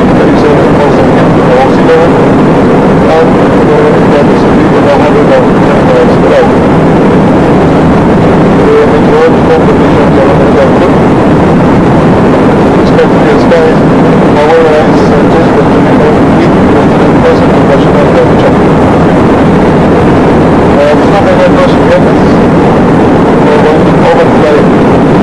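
Steady, loud engine and airflow drone of a small aircraft, heard from inside the cabin.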